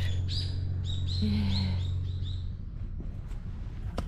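A songbird chirping: a quick run of short, high notes through the first half, over a low steady hum that fades out about two and a half seconds in.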